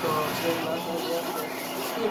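Indistinct voices talking in a small shop, over a steady background hum.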